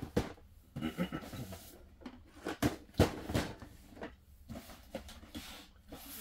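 Cardboard boxes of Lego sets being shifted and pulled from a crowded shelf: a scattered run of light knocks and scrapes, the sharpest about three seconds in.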